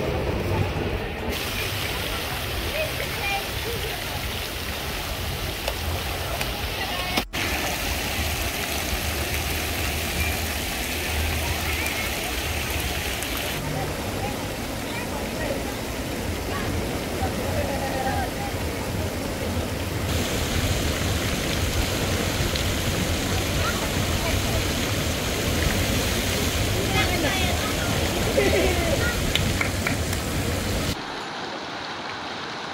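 Steady rushing of water pouring out of waterslide exits into a splash pool, with background voices of people and children. There is a brief dropout about seven seconds in.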